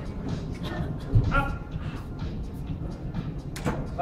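Busy competition-hall ambience: background music and scattered crowd voices, with a single dull thump about a second in.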